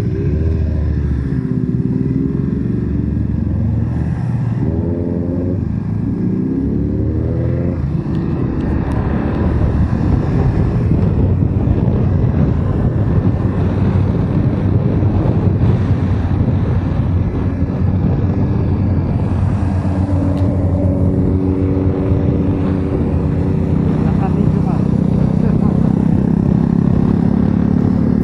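BMW F 850 GS parallel-twin motorcycle engine heard from the rider's seat, accelerating through the gears: the pitch climbs and drops back at each shift during the first several seconds. It then settles into steady cruising with wind rushing over the microphone, the engine note steady again near the end.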